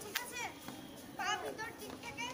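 Several girls' voices chattering and calling out, one after another, with short gaps between.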